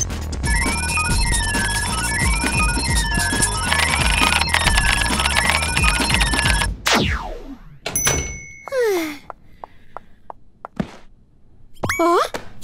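Cartoon soundtrack of busy electronic music with rapid computer-style beeps, running in repeating rising-and-falling runs for about six seconds. It cuts off suddenly into a falling swoop, followed by a couple of short sliding cartoon sound effects and a few light clicks.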